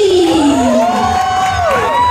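Small crowd cheering and whooping, several voices holding long shouts that rise and fall over one another.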